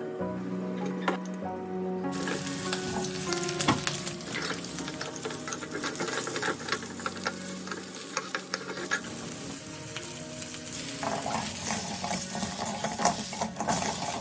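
Pork knuckle pieces sizzling in a hot wok with caramelised rock sugar, stirred and turned with a spatula that scrapes and clacks against the pan. The sizzling starts about two seconds in.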